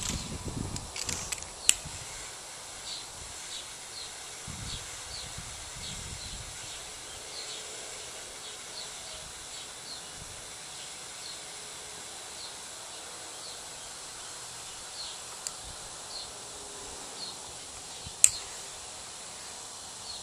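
Butane torch lighter lighting a cigar: a sharp click about two seconds in and another near the end over a steady faint hiss, with a few soft puffs. A small creature's short high chirp repeats a bit under once a second in the background.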